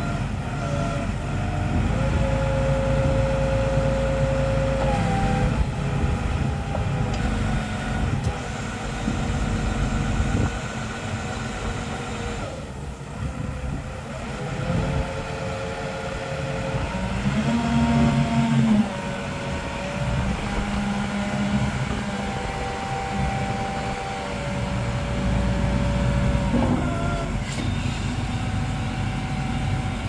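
Svetruck 1260-30 heavy forklift's diesel engine running with a steady low rumble, its revs rising in several stretches as the hydraulics work the forks and mast. During each stretch there is a steady whine from the hydraulic pump, its pitch stepping up and down.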